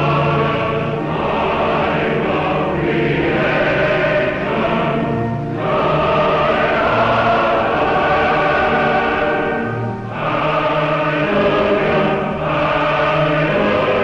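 Choir singing slow, sustained phrases as choral film music, with brief breaks between phrases.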